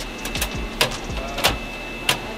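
A few sharp metallic clicks and knocks, about four in two seconds, from hands working on the window frame and inner mechanism of a bare Citi Golf car door shell.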